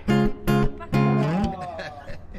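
Acoustic guitar strummed: three short chords about half a second apart, the third sliding down in pitch as it rings.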